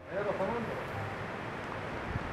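Outdoor field sound: a steady rushing background, with a brief arching voice about half a second in.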